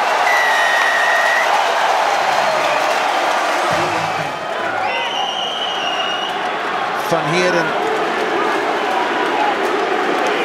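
Stadium crowd cheering and applauding after a try: a dense, continuous noise of many voices and clapping. Two steady high-pitched tones sound over it, one about a second long near the start and one about five seconds in.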